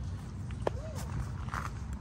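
Low, steady outdoor background rumble with one sharp click a little past half a second in and a brief faint voice.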